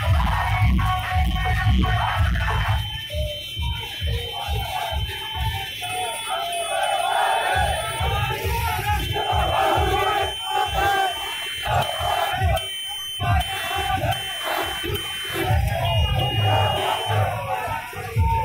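A street crowd shouting and cheering, many voices at once, over music with a low, regular beat that is strongest at the start and near the end.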